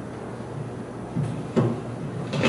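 Two short knocks about a second and a half in, the second the louder, from things being handled at a lectern, over a steady low room hum.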